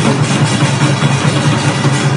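An ensemble of Korean janggu (hourglass drums) played with sticks in a fast, dense run of strokes.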